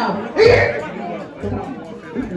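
A woman speaking into a microphone over a PA system, with crowd chatter beneath.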